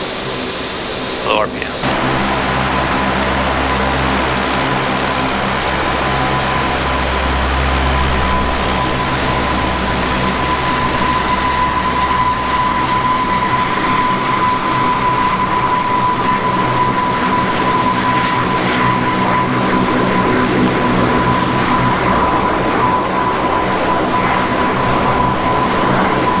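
Four Allison 501 turboprop engines of the Aero Spacelines Super Guppy Turbine running on the ground: a steady high turbine whine over a propeller drone. It starts suddenly about two seconds in, after a brief quieter stretch of cockpit sound.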